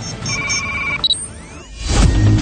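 Electronic beeps of a TV channel's transition sting: three quick high beeps over a held tone, then one higher beep about a second in. Faint gliding sweeps follow, and a whoosh swells near the end.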